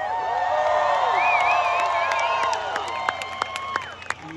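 Concert crowd cheering, whooping and whistling just after a ska song ends. A high wavering whistle stands out in the middle, and the cheering eases toward the end.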